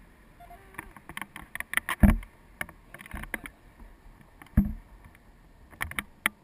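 Wind buffeting an action camera's microphone in tandem paraglider flight, with irregular clicks and rustles from the harness and camera mount. Two heavier thumps come about two seconds in and again about four and a half seconds in.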